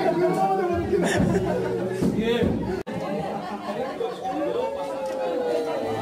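Several people chattering and talking over each other. The sound breaks off for an instant a little before halfway, where the video is cut.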